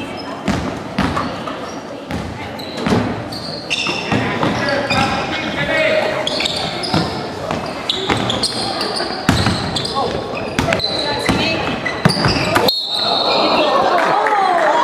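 A basketball bouncing and thudding on a wooden gym floor during play, irregular knocks over the voices of players and spectators in a large, echoing hall. The sound changes abruptly near the end.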